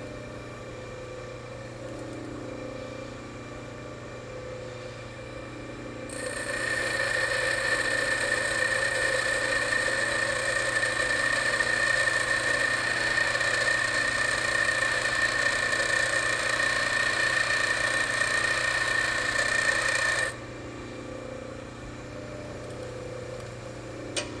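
Bench grinder running with a steady hum. About six seconds in, a high-speed steel lathe tool bit is pressed lightly against the wheel and ground slowly for about fourteen seconds, a steady hiss with a high whine, while the clearance angle is cut. It is then lifted off, leaving the motor humming.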